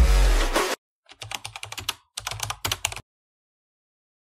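Electronic music with heavy bass cuts off abruptly under a second in. After a short gap comes a rapid run of computer-keyboard typing clicks lasting about two seconds, which stops suddenly.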